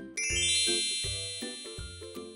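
A bright chime sound effect: a quick upward run of high bell-like notes that then rings on and slowly fades. It plays over light background music with a bass line.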